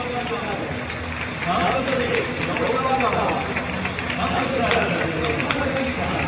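Stadium public-address announcer calling out players' numbers and names over the loudspeakers, the voice echoing around the stands, over steady scattered clapping from the crowd.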